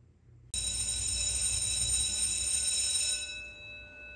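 A bright bell-like chime with several steady high tones starts suddenly about half a second in and holds for under three seconds. Its highest tones then drop away, leaving the lower tones ringing on.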